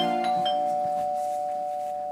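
Doorbell chime: a two-note ding-dong, high then low, ringing on and slowly fading.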